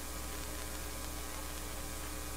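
Steady electrical mains hum with a faint hiss, unchanging throughout.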